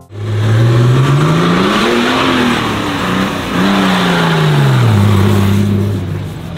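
Extreme 4x4 competition buggy's engine revving hard: it climbs in pitch over about two seconds and drops back, then comes up again and falls away. It ends on a steadier note near the end.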